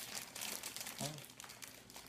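Clear plastic packaging crinkling as it is handled and pulled open, a dense run of quick crackles, with a brief murmur of voice about a second in.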